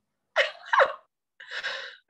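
Short breathy vocal sounds from a woman, like gasps or half-laughs, in two brief bursts about half a second apart. They come through a video call whose audio drops to dead silence between them.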